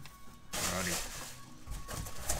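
A brief rustle of handling about half a second in, as a large tachometer gauge is moved in the hands, over a radio playing music.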